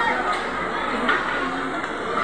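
Background chatter of several indistinct voices, steady and without a single clear speaker.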